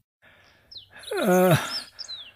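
A single drawn-out cry, about a second long, falling steadily in pitch. It is framed by a few short, high, downward-gliding bird chirps.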